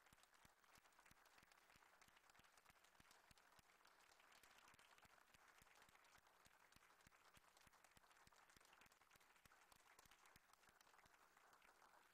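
Near silence: a faint steady hiss with many rapid, faint clicks.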